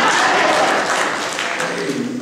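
Congregation applauding, mixed with voices, dying down near the end.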